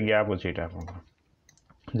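A man's voice speaking for about the first second, then a short pause holding a few faint computer mouse clicks.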